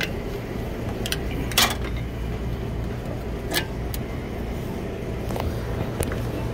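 Screwdriver prying the plastic terminal cover off a hermetic compressor: a few sharp clicks and knocks, the loudest about a second and a half in. Under it a steady low machinery hum.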